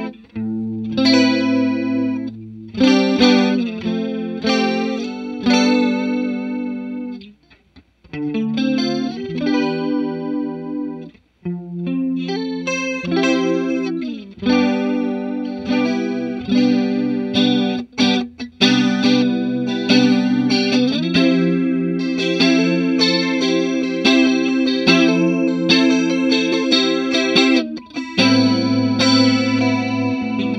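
Clean electric guitar, a Fender American Professional II Stratocaster through a Grobert Second One chorus pedal into a Fender '65 Twin Reverb amp, playing ringing chords and single notes with a shimmering chorus wobble. The playing pauses briefly twice, about a third of the way in.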